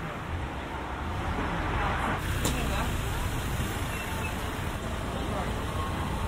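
A car driving slowly past at close range, its engine and tyre noise growing louder from about a second in.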